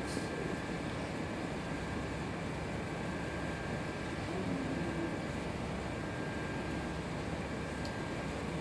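Steady room tone: an even hiss and hum, like a ventilation system, with faint steady tones in it. Two faint short clicks, one just after the start and one near the end.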